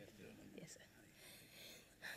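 Near silence, with faint, low murmured talk.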